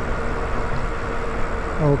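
Steady wind and tyre noise from an e-bike being ridden, with a faint steady whine underneath. A man's voice comes in near the end.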